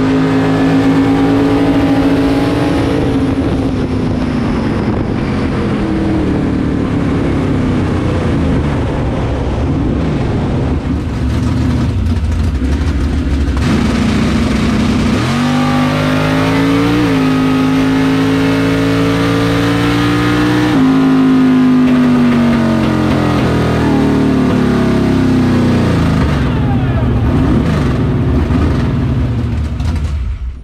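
Drag car's engine running loud and close from inside the cockpit. Its pitch holds steady at first, climbs sharply about halfway through, holds high for a few seconds, then eases back down. The sound drops away abruptly at the very end.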